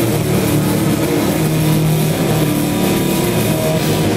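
Live metal band playing loud, heavily distorted guitar and bass that hold long, low droning notes, changing pitch a couple of times, with little drumming.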